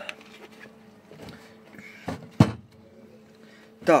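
Small handling noises with one sharp click or knock about two and a half seconds in, over a faint steady hum.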